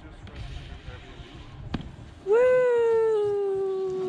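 A person's long drawn-out call, starting about two seconds in, rising briefly and then sliding slowly down in pitch, held for nearly three seconds. A single sharp click comes before it, over a low rumble.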